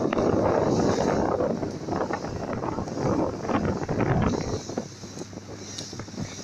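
Wind buffeting the phone's microphone aboard a motorboat running at speed, over the rush of water and spray along the hull. It comes in loud gusts, strongest in the first second or so and again around four seconds in, then eases.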